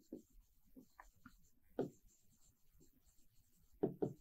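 Faint scratches and taps of a stylus writing by hand on an interactive display screen, in short separate strokes.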